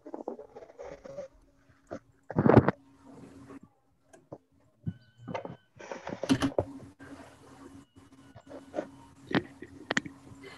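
Open-microphone background noise on a video call: scattered knocks, bumps and rustles over a faint low hum, with the loudest thump about two and a half seconds in and another cluster of knocks around six seconds.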